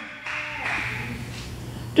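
A pause between phrases of speech: quiet hall room tone with a faint steady low hum.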